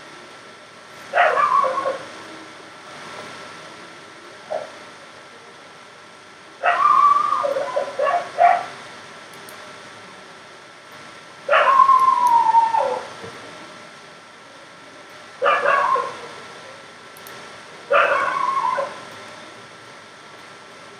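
A dog giving repeated long calls a few seconds apart, each sliding down in pitch, with a short yelp in between.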